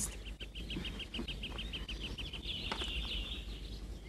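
A small bird singing: a quick run of repeated high chirps, about six a second, then a short warbling trill about two and a half seconds in.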